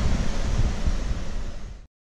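Outdoor wind rumbling on the microphone, a steady noisy haze that fades down and then cuts off abruptly near the end.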